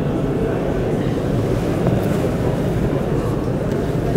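Steady low rumble of background noise with no speech, holding an even level throughout.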